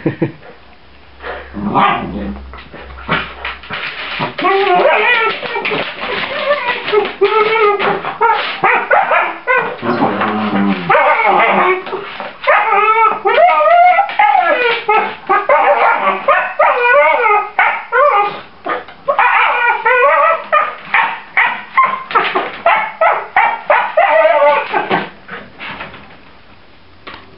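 Two puppies whining and yipping in rough play, a dense run of short wavering calls that goes on almost without a break.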